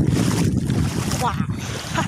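Wind buffeting a phone microphone, a heavy low rumble, with a short burst of a woman's voice a little past the middle.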